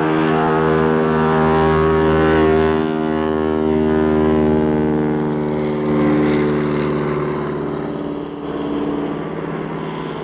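de Havilland Beaver floatplane's radial engine droning steadily at high power as it runs across the water on its floats and lifts off, growing somewhat fainter in the second half.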